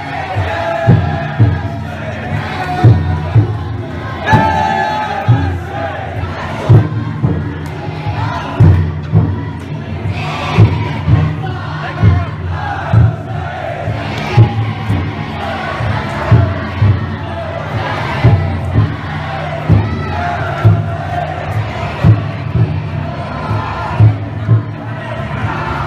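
Big taiko drum inside a futon-daiko festival float struck in slow, slightly uneven beats about once a second, under the rhythmic chanting and shouting of the crowd of bearers carrying it.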